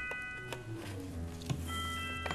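Background music of held, overlapping tones, with a few light clicks and knocks from plastic pipes being handled and fitted into the corner joints of a frame. The sharpest click comes about one and a half seconds in.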